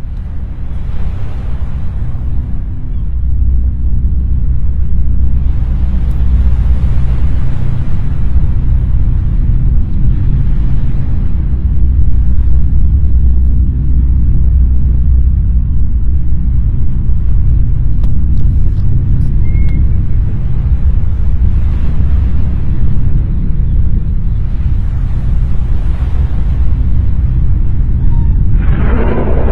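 Loud, deep, continuous rumbling drone that swells and eases every few seconds with a hissing rush on top. It is presented as a mysterious sound coming from a dark storm cloud over a beach.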